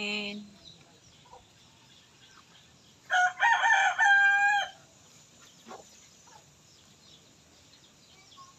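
A rooster crows once, about three seconds in: a single cock-a-doodle-doo lasting under two seconds.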